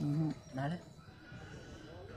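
A young man's voice making two short vocal sounds in the first second, with no recognisable words, then only faint outdoor background.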